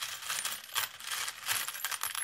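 A dubbed-in sound effect of many small, bright metallic clinks and jingles in quick, uneven succession. It is laid over a time-skip title card.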